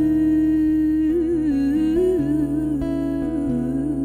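A young woman's singing voice holds one long note with wavering vibrato, over acoustic guitar chords.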